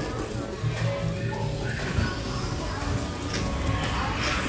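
Background music playing, mixed with indistinct voices of other people.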